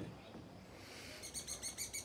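A bird's rapid trill of short repeated notes, about seven a second, starting a little over a second in.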